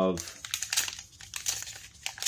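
Foil booster-pack wrapper of a Flesh and Blood trading-card pack crinkling in the hands and being torn open, a run of irregular crackles.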